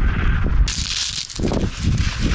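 Wind rumbling on a chest-worn action camera's microphone. About two-thirds of a second in comes a sudden hiss of rustling and scraping as the climber's clothing and shoes rub against the rock while he lowers himself under an overhang.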